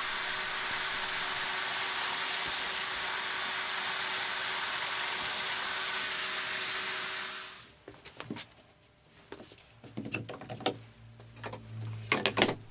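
Festool Domino slot mortiser running steadily as it cuts a notch in a plywood shelf, winding down about seven and a half seconds in. A few light knocks follow as the machine is handled.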